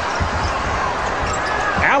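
Basketball arena game sound: a steady crowd murmur over low thuds of a ball bouncing on the hardwood court, more of them in the first half.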